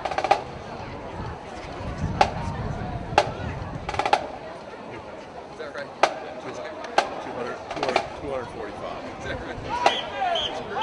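Sharp percussive clicks from marching band percussion, about one a second with a few beats skipped and a couple struck double, each with a brief ringing. A crowd chatters underneath.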